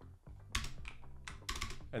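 Computer keyboard keys clicking, several quick presses from about half a second in, as cells are copied and pasted.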